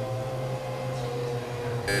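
Steady electronic drone: one held mid-pitched tone over a low hum, with no voice over it.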